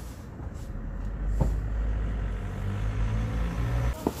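A car's engine, a low steady rumble that grows louder as the vehicle comes close down the alley. There is one short click about a second and a half in.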